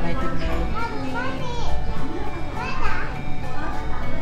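Children talking and calling out in high voices over background music.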